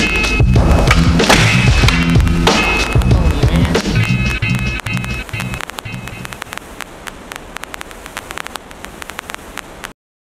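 Music track with a steady bass line that drops away about five and a half seconds in, leaving a quieter run of sharp clicks and knocks from skateboarding. Everything cuts off abruptly at the very end.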